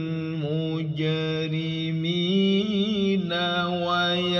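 A man's voice reciting the Quran in melodic tilawah style, holding long ornamented notes that waver in pitch. The note steps up about two seconds in.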